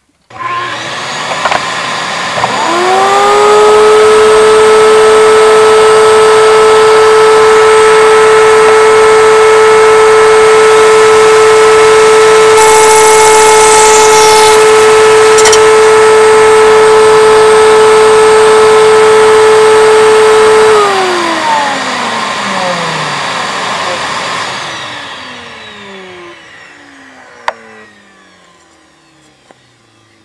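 A wood router starts, spins up to a steady high whine and runs for about eighteen seconds, with a brief rasp in the middle as its bit shapes the end of a dowel into a shouldered toy-car axle pin; the motor is then switched off and winds down with a falling pitch, and a click comes near the end.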